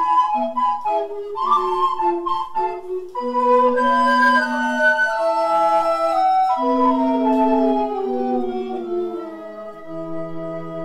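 Recorder ensemble playing in several parts, with a low bass recorder line under held chords; from about six seconds in, the voices step downward together.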